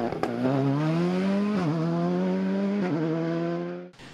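Rally car engine pulling hard, its pitch climbing in the first second and then holding high with two brief dips. It fades away and cuts off abruptly just before the end.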